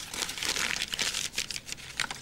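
A crumpled sheet of paper being unfolded and smoothed out by hand: a quick, unbroken run of crinkling rustles.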